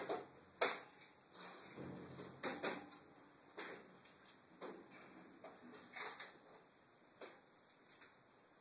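Irregular sharp clicks and taps of small metal parts being handled, about a dozen, the loudest two near the start: the worn retaining clip on an ATV brake caliper being worked back into place.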